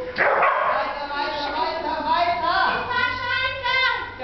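A dog barking and yipping in a run of high-pitched calls, some sliding up or down in pitch, the longest coming near the end.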